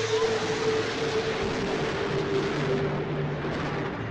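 Thunder from a nearby lightning strike: a sudden loud burst of noise that rolls on and fades out near the end. A steady background music drone runs underneath.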